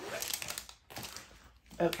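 Plastic film covering a large diamond painting canvas crinkling as the canvas is handled and moved, loudest in the first second and then dying down.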